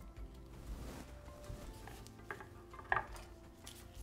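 Vegetable peeler scraping the skin off a raw beetroot: faint scrapes and two sharper clicks a little after halfway, under quiet background music.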